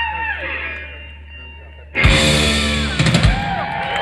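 Live electric blues band: a held electric guitar note fades away, then about halfway through the whole band comes in with a loud hit of guitars, bass and drums with crashing cymbals that rings on.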